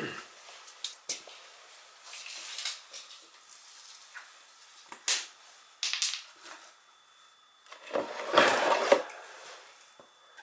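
Hand tools and parts being handled beside an oil burner: scattered clinks and knocks, with a louder rustling burst about eight seconds in.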